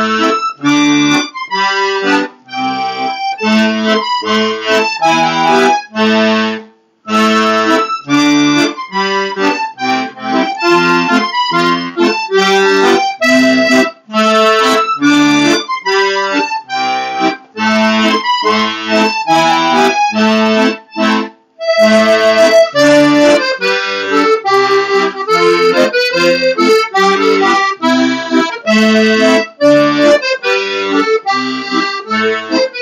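Solo chromatic button accordion playing a melody over bass and chord accompaniment. It breaks off briefly twice, about seven and twenty-one seconds in, between phrases.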